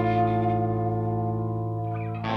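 Alternative rock recording: an effected, distorted electric guitar chord rings out and slowly fades over a held low bass note.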